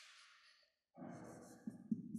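A man's audible breath out, a soft sigh, starting about a second in, with a couple of small clicks near the end.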